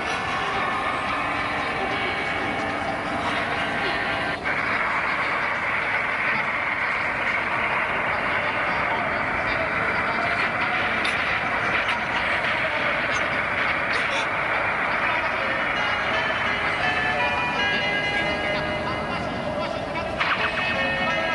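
Steady roar of heavy rain and storm noise from the anime's soundtrack, growing louder about four seconds in. Music starts to come in near the end.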